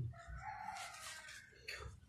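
A rooster crowing faintly: one drawn-out call of a little over a second, ending with a short rising note.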